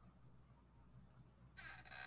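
Near silence: room tone, with a brief soft scratchy rustle starting about three-quarters of the way in.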